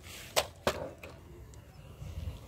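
Two sharp clicks about a third of a second apart, the sound of hard plastic toys being knocked together as they are handled, followed by faint handling noise.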